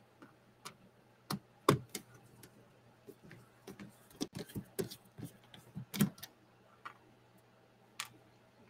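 Scattered small clicks and taps of hard plastic model-kit parts and a small screwdriver being handled on a cutting mat, the sharpest about two seconds in and again near six seconds.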